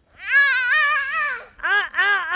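A young child's wordless, high-pitched vocalising: one long wavering call, then shorter calls that rise and fall near the end.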